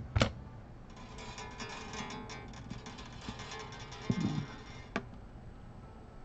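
Acoustic guitar strings ringing and jangling faintly as the instrument is handled, with a sharp click just after the start and another about five seconds in.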